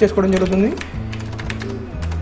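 Computer keyboard keys tapped a few times in quick succession in the second half, over a steady low hum.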